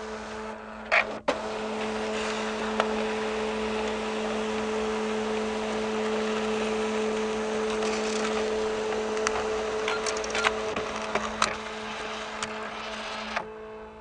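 Steady mechanical hum with a hiss over it, with a few sharp clicks scattered through; it cuts off suddenly near the end.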